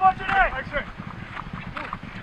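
Polo players' short shouted calls, two or three in the first second, over the thudding hoofbeats of ponies galloping on grass.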